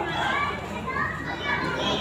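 Several people talking at once, adults and children's higher voices mixed in a general chatter.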